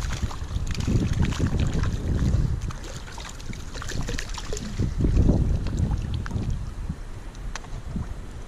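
A small hooked fish splashing and thrashing at the water's surface as it is played in and netted, with low rumbles of wind buffeting the microphone that swell and fade.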